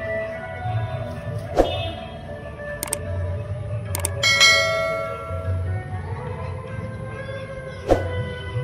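Music with a steady low beat, overlaid by a few sharp clicks and, about four seconds in, a bright bell ding that rings out and fades over about a second: the click-and-bell sound effect of a subscribe-button animation.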